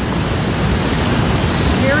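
Steady, full rush of Niagara Falls' water pouring over the brink and crashing onto the rocks below, heard from right at the edge, with wind buffeting the microphone.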